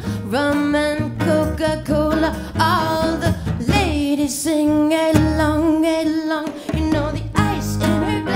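A woman singing a live pop-folk song, with long held notes, over a small band with acoustic and electric guitars and a hand drum.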